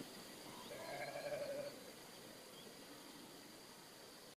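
A sheep bleats once, faintly, about a second in; the call lasts about a second.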